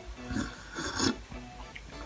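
A person sipping a drink from a mug: two soft sips, about half a second and a second in.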